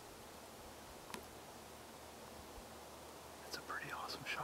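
Quiet, steady background hiss with one small click about a second in, then a low whisper near the end.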